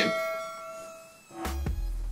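A bell-like ding sound effect, several tones ringing together and fading away over about a second. About one and a half seconds in, a short knock and a steady low hum come in.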